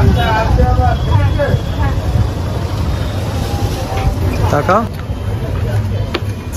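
Street traffic: a steady low rumble of passing vehicles, with people's voices chattering in the background.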